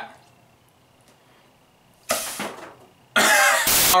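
A man laughing: a short breathy burst about two seconds in, then louder laughter near the end, after a couple of seconds of near silence.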